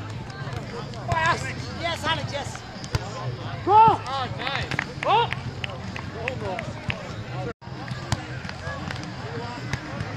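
Beach volleyball rally: short sharp smacks of hands and forearms on the ball, with players' brief shouted calls, the loudest about four seconds in. The sound drops out for a moment about seven and a half seconds in.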